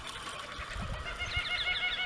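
A bird calling in a fast run of repeated high notes, starting about a second in, with a few low knocks before it.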